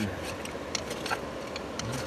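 Steady rush of river water, with a few light clicks scattered through it.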